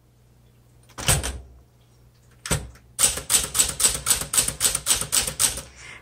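1969 Smith Corona Classic 12 manual typewriter being typed on: two single key strikes about one and two and a half seconds in, then a quick even run of keystrokes, about six a second, through the last three seconds.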